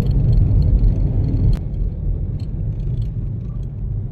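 Car moving along a road, heard as a steady low rumble of road and wind noise, with a single sharp click about one and a half seconds in.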